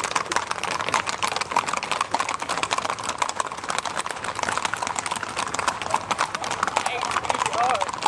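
Horses' hooves clip-clopping on an asphalt road as several ridden horses walk past, a dense run of overlapping hoof strikes.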